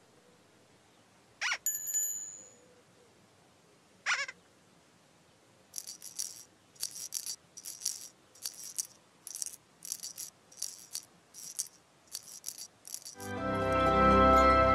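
Children's-show sound effects: two short, high ringing sounds a couple of seconds apart, then a run of shaker-like rattles about two a second. Music with sustained tones swells in loudly near the end.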